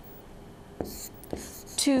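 Marker writing on a board: a brief scratch of the tip and a couple of light taps as figures are drawn, then a woman begins speaking near the end.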